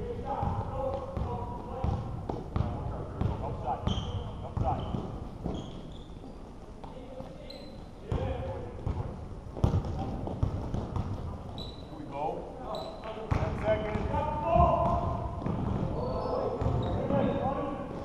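Basketball game in a gym: a basketball bouncing on the court floor and sneakers squeaking, under a steady hubbub of players' and spectators' voices, with a few louder sharp thumps in the second half.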